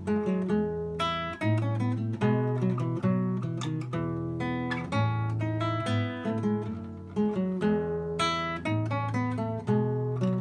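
Solo classical nylon-string guitar played fingerstyle: a steady flow of quickly plucked, arpeggiated notes over held bass notes.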